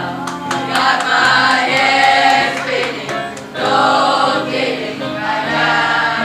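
A class of children singing together as a choir, holding long notes that change every second or so. A few short clicks in the first second.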